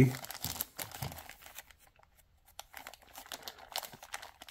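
Clear plastic bag crinkling in the hands as it is handled and pulled open, in irregular crackles with a short pause about halfway through.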